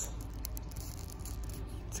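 Quiet steady background noise with a few faint light ticks about half a second in, from fingers handling the paper care label of a fabric knee sleeve.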